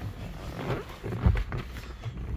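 Rustling and bumping of a person settling into a vehicle's driver's seat, with a dull thump a little past halfway.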